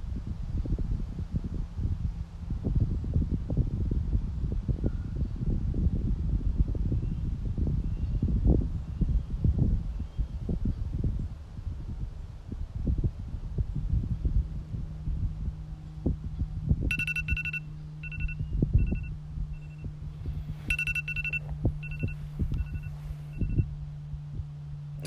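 Low, uneven rumbling of wind buffeting the microphone over a steady low hum. About seventeen seconds in, a smartphone timer alarm goes off: a repeating pattern of short electronic beeps that plays through twice, signalling that the five-minute timer has run out.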